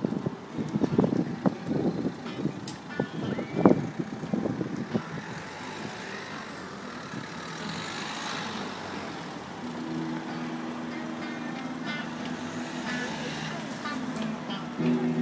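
Busy street ambience: irregular gusts of wind on the microphone at first, then a passing hiss of traffic, and a steady low drone setting in near the end.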